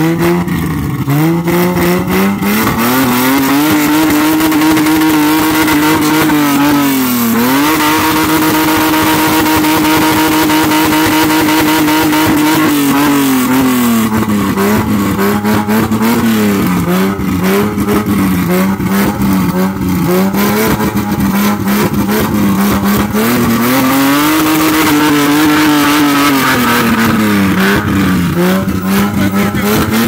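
Isuzu Trooper's engine being revved: it climbs in the first couple of seconds and is held at high revs until about halfway, with a brief dip, then settles to a lower steady speed, rises and is held high again, and drops back near the end.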